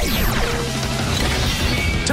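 Action-show soundtrack music with a falling sweep sound effect that glides down in pitch over the first second, over a steady low drone.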